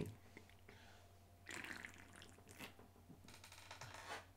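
Near silence: room tone with a faint steady hum and a few faint, indistinct noises.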